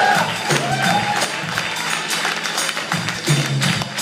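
Live blues-rock band playing: electric guitar over keyboard and a steady drum beat, with sustained low notes shifting every second or so and a few bent guitar or vocal lines near the start.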